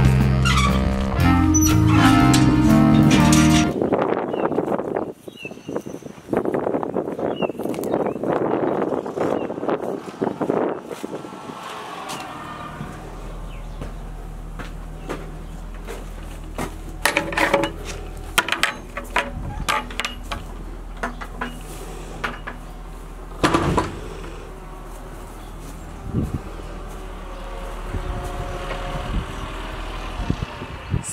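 Music for the first few seconds, then several seconds of rustling noise. After that, an engine runs steadily outside the barn with a low hum, while wooden knocks and thuds come from the barn door and boards being handled inside.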